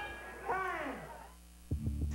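Broadcast switch from the fight to a television commercial. A falling voice-like sound early on fades into a brief lull, then the commercial's soundtrack starts abruptly near the end with a loud, deep, steady drone.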